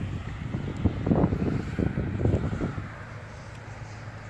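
Wind buffeting the microphone outdoors: a low rumble with gusts in the middle that ease off in the last second.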